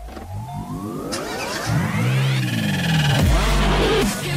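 Programme intro sting: a car-engine revving sound effect rising in pitch for about two seconds, then running on under electronic music, with a deep bass hit near the end.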